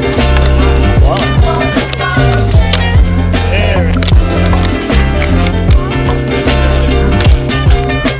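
Music with a steady beat and deep sliding bass notes.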